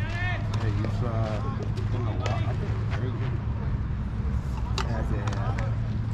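Indistinct voices of people talking casually, over a steady low hum.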